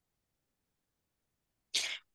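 Near silence, then near the end a short, sharp breath of noise lasting about a quarter of a second: a quick intake of breath just before speech resumes.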